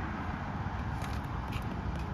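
Steady low rumble of wind on the microphone, with a few faint taps about a second in.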